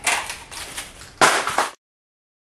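Cylinder head of a Honda L15 engine being lifted off the block by hand: scraping, rattling metal handling noise, louder for half a second near the end, then the sound cuts off abruptly.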